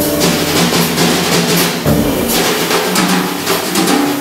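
Jazz drum kit played with sticks: a busy, rapid run of strokes on the drums and cymbals, with bass drum underneath.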